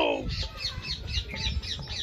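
Birds chirping in a rapid series of short high calls, about five a second, just after a brief falling vocal sound at the very start.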